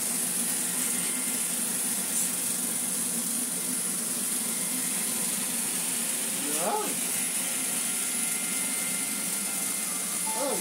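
Vorwerk robot vacuum running on carpet: a steady whirr and hiss from its suction fan and brushes, with a low hum.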